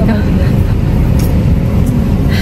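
Steady low rumble of a car's engine running, heard from inside the cabin.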